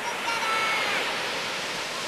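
Heavy ocean surf from a hurricane swell, large waves breaking and washing up the beach in a steady roar. About a quarter of a second in, a brief high-pitched call rises above it.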